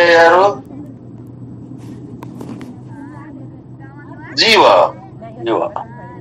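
A man speaking in short phrases, with a pause of about four seconds in which only a steady low background hum is heard.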